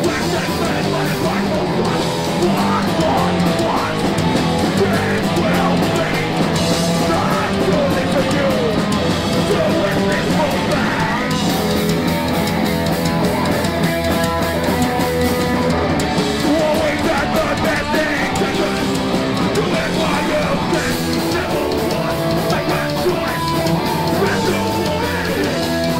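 Hardcore punk band playing live, with distorted electric guitar, bass and drums and shouted vocals over the top.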